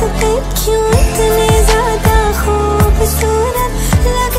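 Music from a Hindi film song: an ornamented melodic lead line with sliding notes over a beat with deep, pitch-dropping bass drum hits.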